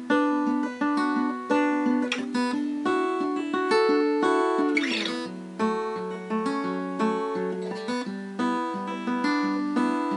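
Acoustic guitar fingerpicked in ringing arpeggios, notes overlapping and sustaining, with an occasional strum across the strings.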